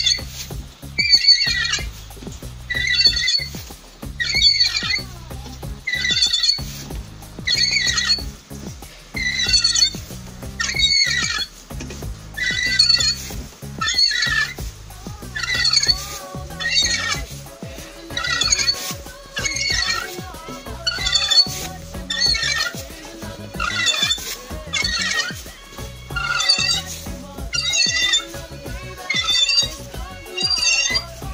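Hand reamer turning through the aluminium camshaft bearing bores of a VAZ-2108 8-valve cylinder head, cutting the warped bed true, with a short high squeal on each stroke about once a second, coming a little faster in the second half. From about halfway a faint steady tone runs beneath it.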